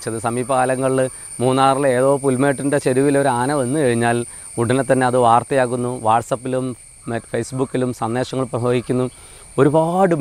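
A man talking in Malayalam throughout, with short pauses, over a steady high-pitched insect drone in the background.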